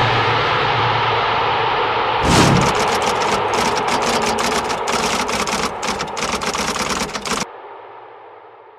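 A sustained electronic sound effect for about two seconds, then a thump and a fast, uneven run of typewriter keystroke clicks. The clicks stop abruptly near the end, leaving a short fading echo.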